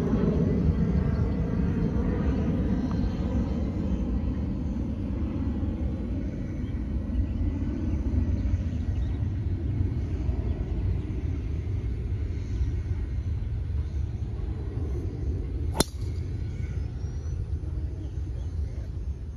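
A golf driver striking a ball off a tee: one sharp crack about sixteen seconds in, over a steady low rumble.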